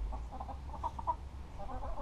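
Backyard hens clucking softly as they feed, a scatter of short, quiet notes.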